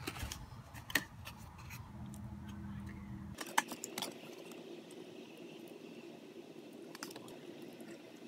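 A metal fork clinking and scraping as it cuts into a chocolate tart in a paperboard pastry box, with the cardboard handled; a few sharp clicks about a second in and again around three and a half to four seconds in.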